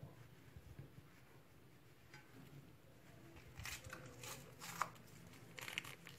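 Faint crinkly squishing and rustling of a hand kneading soft margarine into icing sugar in an earthenware bowl, in short scrapes that come more often and louder in the last couple of seconds.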